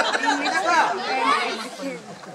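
Indistinct speech and chatter from a group of people talking.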